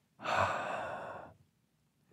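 A man sighing once: a single breathy exhale of a little over a second, loudest at its start and trailing off.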